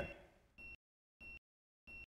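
Three short, high-pitched electronic beeps about two-thirds of a second apart: key-press tones from a digital refrigeration system analyzer as its cursor is stepped along the pressure chart.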